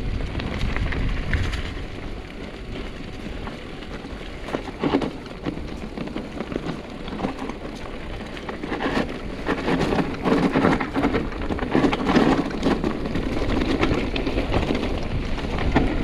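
Trek Roscoe 7 hardtail mountain bike rolling downhill on a grass and gravel trail: tyres crunching over stones, the bike rattling and clattering, with wind on the microphone. The rattle grows rougher and louder about halfway through as the track turns stony.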